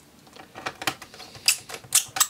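Small Phillips screwdriver driving a screw into a laptop's base panel: a run of sharp, irregular clicks and ticks starting about half a second in, the loudest near the end.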